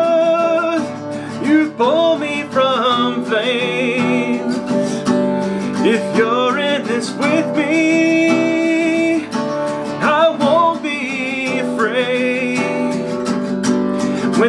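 Man singing with long, held notes while strumming an acoustic guitar.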